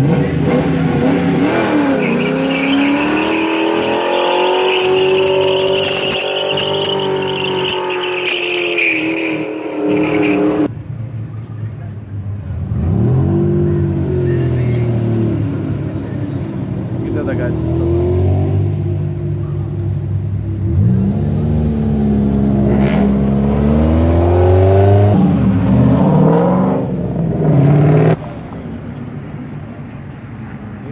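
Cars accelerating hard past one after another, engines revving: one long rev rises and is held for about ten seconds and then drops off, followed by several separate climbs in engine pitch as further cars pull away through the gears.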